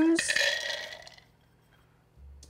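A cup of whole cashews poured from a glass bowl into a plastic blender cup: a short rush of nuts clattering in that fades away within about a second.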